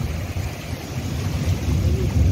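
Storm wind buffeting the microphone as a heavy, uneven low rumble, over a steady rush of surf and seawater washing through flooded ground.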